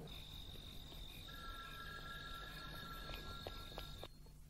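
Crickets trilling steadily in a night-time garden, with two lower steady tones joining about a second in and a few light ticks near the end.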